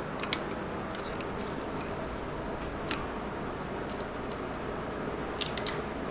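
Faint, scattered light metallic clicks and ticks from small engine parts being handled, a pick tool against the VTC cam gear and its small lock pin, over steady background room tone, with a few quick clicks close together near the end.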